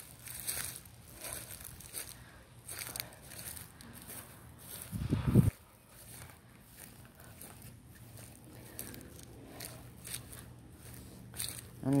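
Footsteps through an overgrown yard, with scattered soft crackles and rustles underfoot. A brief, louder low sound about five seconds in.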